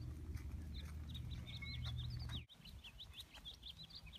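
Small birds chirping in quick, short, high notes, several a second, over a faint low rumble that cuts off about halfway through.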